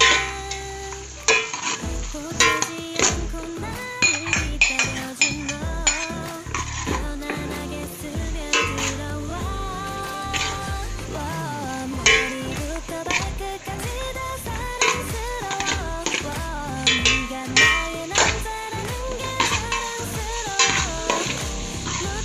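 Metal spoon clinking and scraping against an aluminium pot as onion slices are stirred in melted butter, with a light sizzle. Background music with a steady beat plays underneath.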